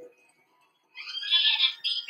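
A smartphone screen reader's synthetic voice talking rapidly through the phone's small, tinny speaker, starting about a second in after a short pause.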